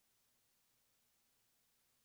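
Near silence: only a faint steady hum and hiss.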